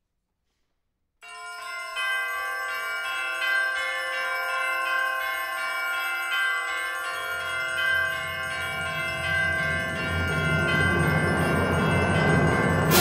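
A concert band piece begins about a second in with ringing, bell-like mallet percussion notes over held tones. From about seven seconds a low rumble swells beneath, and the music grows louder toward the end.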